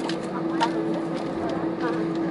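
Airbus A320 cabin noise while taxiing: a steady hum with one constant buzzing tone, broken by a few light clicks.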